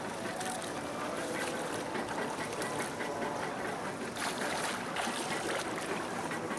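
Pool water splashing steadily from a swimmer's freestyle arm strokes and kicks as he swims up to the wall, with the water churning close to the microphone.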